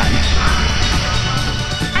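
Wind buffeting the microphone in low rumbling gusts over the steady rush of a waterfall splashing down a rock wall.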